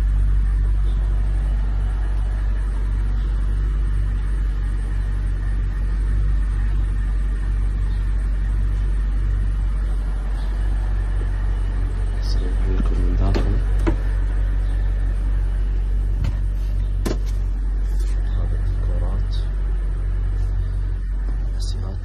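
Mercedes-Benz E500's V8 engine idling with a steady low rumble, a few light clicks in the second half.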